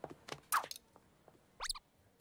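Cartoon sound effects: a few light clicks and a short crackly swish, then a quick rising whistle-like zip near the end, as of a fairy's magic wand being used.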